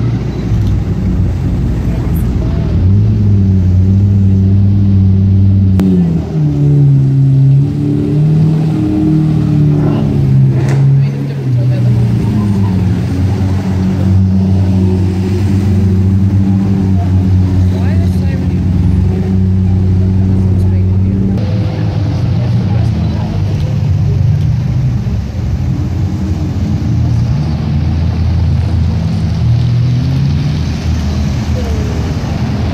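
Several supercar engines, among them a Lamborghini Murciélago V12 and a McLaren 12C twin-turbo V8, running at low revs as the cars drive slowly past one after another. The engine note steps to a new pitch several times as each car takes over, with some light revving.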